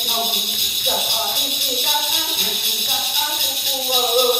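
Hmong shaman chanting in a continuous sing-song voice while shaking metal ring rattles, whose steady jingling runs beneath the chant without a break.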